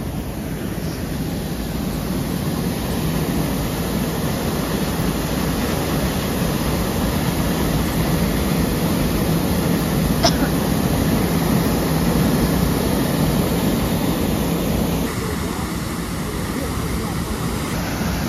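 Steady rushing of a powerful jet of water shooting from a dam outlet and crashing into the creek below. Its tone shifts slightly near the end, and there is one brief high squeak about ten seconds in.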